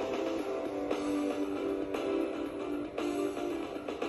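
Background music led by guitar, with strummed chords accented about once a second.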